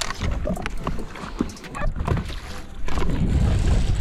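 Light clicks and knocks as a small bass is handled on a boat deck, then, about three seconds in, a loud steady low rumble takes over while a hooked fish is reeled in.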